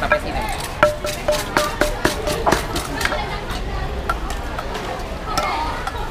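Pestle pounding som tam (papaya salad) in a mortar: a quick run of sharp knocks, about two a second, thinning out after about three seconds, under market chatter.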